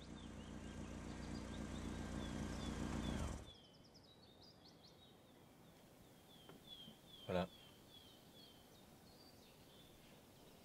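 A car's engine and tyres, growing louder as it drives up, then cut off sharply about three and a half seconds in. Quiet outdoor ambience follows, with a bird repeating a short falling chirp and one brief soft knock.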